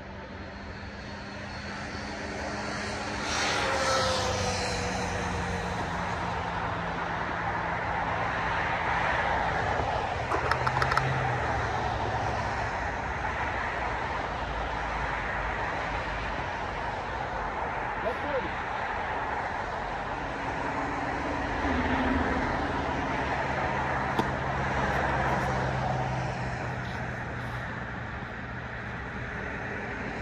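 A steady distant engine drone that swells over the first few seconds, with a falling pitch as it comes up, then holds for the rest. A few short sharp taps come about eleven seconds in.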